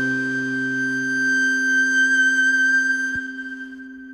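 Background music ending on one long held high note over a steady low drone, fading out near the end.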